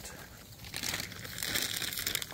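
Footsteps rustling and crunching through dry fallen leaves and grass, irregular, quieter at first and a little louder from about a second in.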